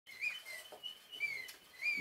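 Stovetop enamel kettle starting to whistle as the water comes to the boil: a series of short, wavering high whistles that come and go.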